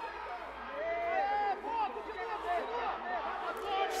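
Crowd of spectators shouting and cheering, many voices calling out over one another.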